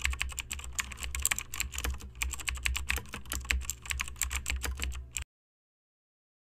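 Rapid keyboard typing clicks, used as a sound effect for text being typed on screen, over a low hum. The typing cuts off abruptly about five seconds in.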